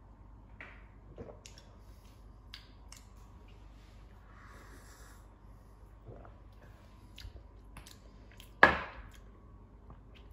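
A man sipping and swallowing beer, with small wet mouth clicks and soft gulps, then one sharp, much louder smack or knock a little before the end.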